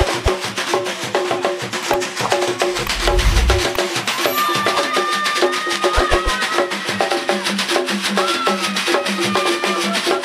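Traditional Zaramo ngoma music: hand drums beaten in a fast, dense rhythm with pitched notes. A high held melodic line joins about four seconds in. A brief low rumble comes around three seconds in.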